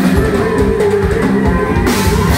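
Live band music: a drum kit keeping a steady beat under a long held melody note.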